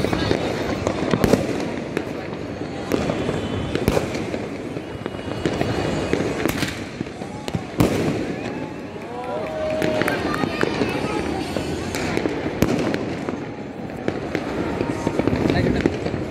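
Fireworks and firecrackers going off across the city: irregular sharp bangs and pops, some near and some far, over a continuous babble of people's voices and calls.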